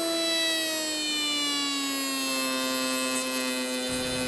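Table-mounted router spinning a lock miter router bit: a steady high whine that drops in pitch over about the first two seconds and then holds. The motor is slowing under load as the bit cuts into the workpiece.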